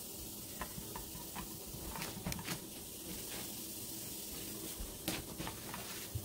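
A few faint, scattered clicks of a wire whisk against a stainless steel bowl as egg yolks and cornstarch are whisked, over a steady low hiss.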